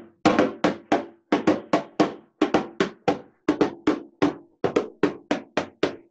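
A hand drum struck in a quick rhythmic pattern, about three to four sharp beats a second in short phrases, each beat ringing briefly at a low pitch.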